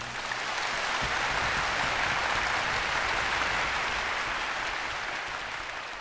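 Audience applause: dense steady clapping that swells in the first second, then slowly fades toward the end.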